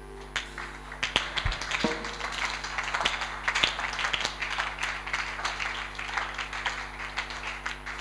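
A congregation clapping and applauding, the clapping building about a second in and staying dense and irregular, over a steady electrical mains hum.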